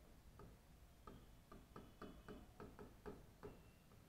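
Near silence with faint, short ticks of a pen tip tapping on a writing board as text is written, a few a second and unevenly spaced.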